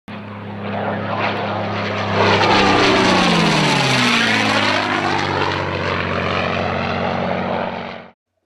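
Propeller-driven airplane flying past: the engine and propeller grow louder, drop in pitch as the plane passes about three to four seconds in, then the sound cuts off suddenly at the end.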